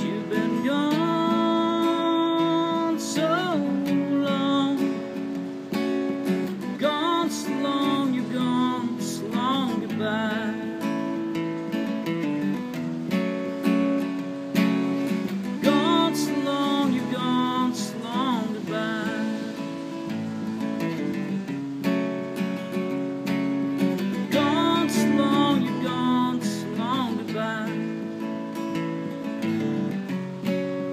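Steel-string acoustic guitar strummed steadily in an instrumental passage, with a wordless vocal melody that wavers and glides in pitch, coming and going over the chords.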